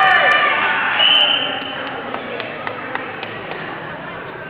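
Spectators shouting in a gym during a wrestling bout, then a short, high referee's whistle about a second in that stops the action. After it the room drops to a quieter murmur with a few light knocks.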